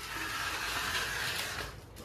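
A flat hand tool scraping across a patched plaster wall in one long stroke that cuts off shortly before the end.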